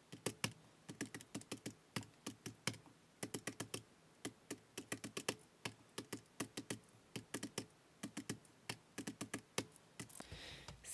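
Keys of a Casio desktop calculator being pressed with the tip of a pen: quick, irregular plastic clicks in runs of several a second as figures are entered.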